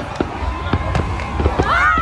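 Firecrackers cracking sharply several times amid a crowd's voices, with loud rising-and-falling shouts near the end.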